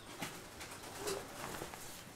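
Faint pigeon cooing, a low call about a second in, over light rustling and soft ticks.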